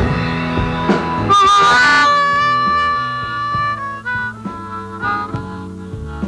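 Live blues band playing: drum-kit hits and guitar under a lead wind instrument that slides up into a long, held high note just over a second in, then breaks into shorter phrases.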